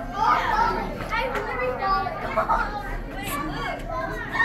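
Overlapping chatter of a crowd of visitors, with children's voices among them and no single clear speaker.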